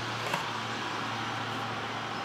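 Steady low hum under an even hiss of background noise, unchanging throughout.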